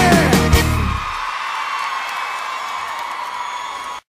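Live sertanejo band ending a song: the singer's last held note stops and the band hits its final chord with drums and cymbals in the first second. The chord then rings out over cheering and whoops from the audience, and the sound cuts off suddenly at the end.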